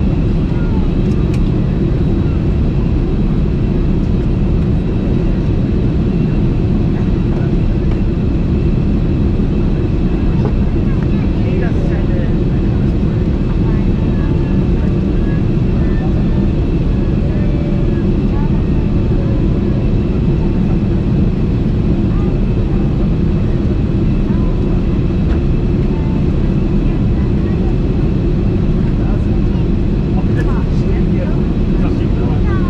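Boeing 747-400 cabin noise in flight: a loud, steady, deep rush of airflow and engine noise that holds even throughout.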